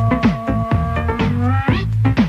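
Music: a 1980s electronic pop song on the radio, with short drum hits that drop sharply in pitch about twice a second over held synthesizer notes, and a rising synth glide in the second half.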